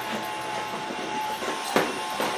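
Cordless stick vacuum cleaner running with a steady whine from its motor, and a brief knock near the end.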